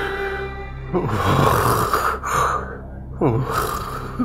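Soft background music with a person sobbing over it: breathy, gasping sounds begin about a second in, and a short voiced cry comes near the end.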